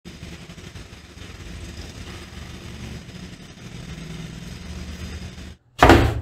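A steady low rumble with a hum that cuts off suddenly near the end, followed by a loud thump as the cardboard YouTube award shipping box is set down on a wooden desk.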